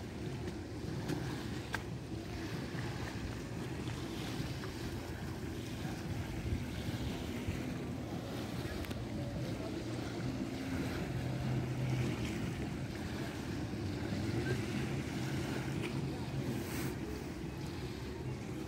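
Outdoor wind noise on a phone microphone, a steady low rumble, with faint sea ambience beneath it.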